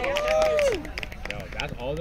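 A long shouted call from a player in the first second, over other voices and scattered sharp taps, then quieter talk near the end.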